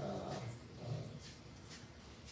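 A man's low murmuring voice that trails off about a second in, followed by faint short scratching strokes of a dry-erase marker on a whiteboard.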